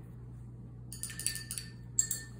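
A paintbrush knocking against a glass water jar as it is rinsed: a quick run of light clinks with the glass briefly ringing, then one sharper tap near the end.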